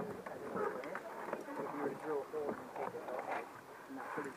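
Indistinct voices of people talking nearby, with no clear words.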